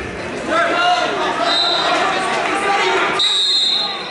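Voices calling out in a large echoing gym during a wrestling bout. A shrill steady whistle blast comes about three seconds in, the referee's whistle stopping the action.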